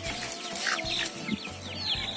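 Young roosters packed in a bamboo carrying basket, clucking in many short calls, with one longer held call in the first second.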